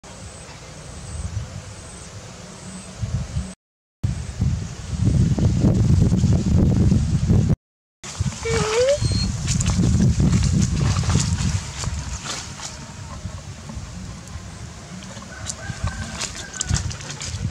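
Low rumbling noise on the microphone that swells and fades in surges, with one short rising whine about halfway through.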